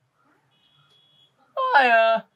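A man wailing in pain: after a quiet start, one drawn-out cry comes about one and a half seconds in, falling in pitch.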